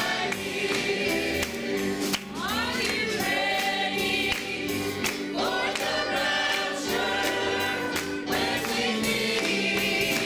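Gospel choir of mixed men's and women's voices singing together, over an accompaniment with a steady beat.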